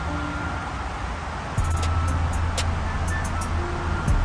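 Steady road traffic noise from the H1 highway running close by, a continuous rush with a low rumble that grows louder about one and a half seconds in.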